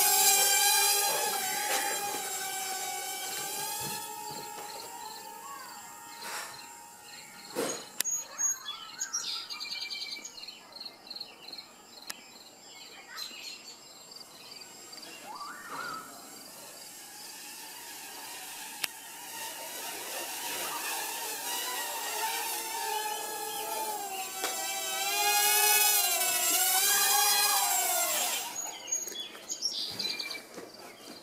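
Small quadcopter's motors and propellers whining as it lifts off, the pitch wavering up and down with the throttle. The whine fades as the drone climbs away and grows loud again near the end as it comes back down to land.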